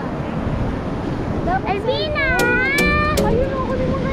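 Wind rushing over the microphone with surf breaking on a beach. About halfway through, a high gliding voice comes in over a few evenly spaced clicks.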